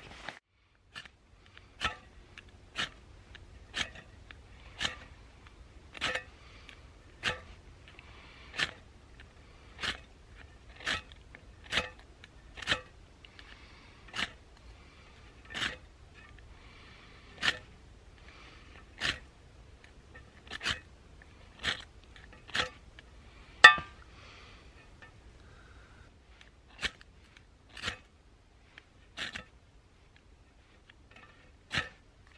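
Ferro rod (fire steel) scraped again and again over a Trangia spirit burner, one short scraping strike about every second, one of them louder about three-quarters of the way through. The burner will not catch: the spirit is too cold to light.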